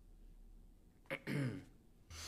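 A man clears his throat once, about a second in: a short sharp catch, then a brief rasping sound.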